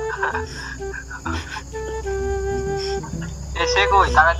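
Crickets chirping steadily, under a voice coming through a phone's speakerphone that holds one hummed note for about a second in the middle.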